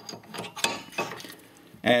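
A few sharp metal clicks in the first second as a steel spider gear is set back into a Ford 7.5 open differential carrier and its teeth are meshed with the side gears.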